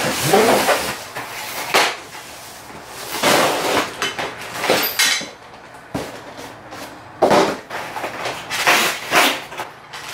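Cardboard box rustling and scraping as it is opened and emptied, with a few knocks as the metal bike-rack parts are set down on a tile floor, a sharp one about six seconds in.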